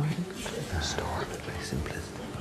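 Soft, hushed speech, partly whispered, with a couple of sharp hissing 's' sounds.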